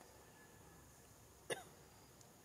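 A single short, sharp hiccup-like squeak from a macaque about one and a half seconds in, falling briefly in pitch, over faint forest insect hum.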